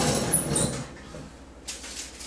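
Metal oven rack sliding out on its runners with a scraping squeak, fading out in the first second; near the end a click and the crinkle of aluminium foil as it is lifted off the cake tin.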